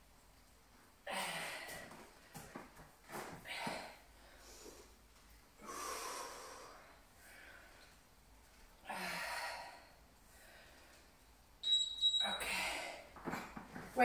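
A woman breathing hard through repeated dumbbell deadlifts, with a forceful breath every two to three seconds. A short high-pitched ring sounds near the end.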